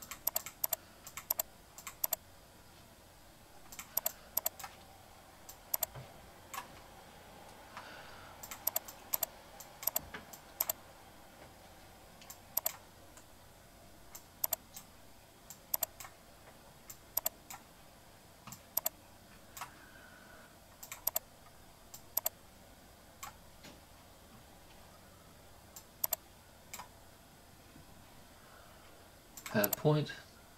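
Clicks of a computer mouse and keyboard at a desk: sharp single and quick paired clicks at irregular intervals, over faint steady room hiss.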